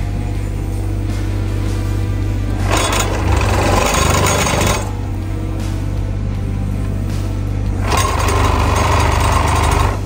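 Excavator-mounted TMG-ECP21 hydraulic plate compactor running, its eccentric-weight vibration working the steel plate against gravel, noticeably louder in two stretches, about three seconds in and again from about eight seconds in. Steady background music plays along.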